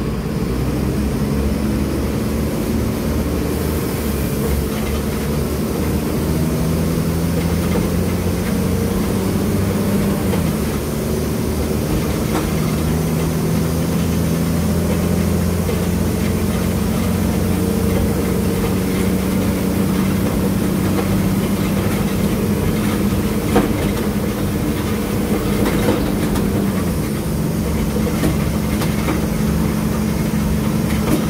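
Mercedes-Benz OM 906 LA inline-six diesel of a Mercedes-Benz O500U city bus, heard from inside the cabin near the rear-mounted engine, running under way with its pitch stepping up and down as it goes. A couple of sharp clacks stand out in the second half.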